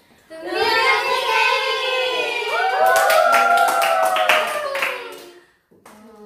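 Several young women singing together in sustained, sliding notes, with hand clapping joining about halfway through; the singing and clapping stop a little before the end.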